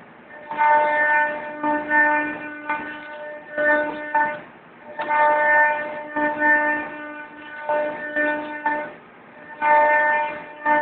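Deckel Maho DMP 60S CNC machining centre cutting a part: a pitched machine whine that starts and stops every second or so as it moves, with brief lulls about halfway and near the end.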